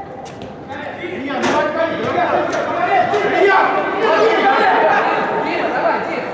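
Several voices shouting and talking over one another, echoing in a large indoor football hall, with a few sharp knocks, typical of a ball being kicked.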